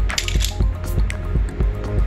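Background music with a steady beat and sustained low bass.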